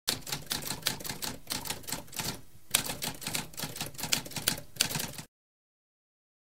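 Typewriter keys clacking in quick, uneven runs, with a short pause about two and a half seconds in. The typing stops a little after five seconds.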